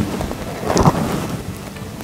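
Steady hiss of rain with low thunder-like rumbling, swelling briefly a little under a second in.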